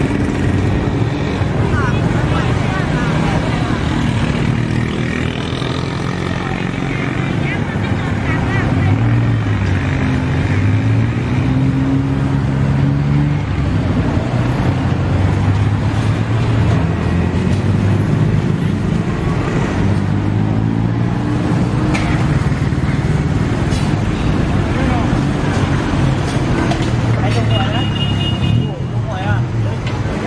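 Busy street-market ambience: people talking all around and motor vehicle engines running close by, their pitch rising and falling as they move.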